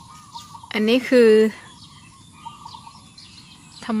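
Faint bird calls, a thin wavering chirping that runs steadily under a woman's voice. The voice speaks briefly about a second in.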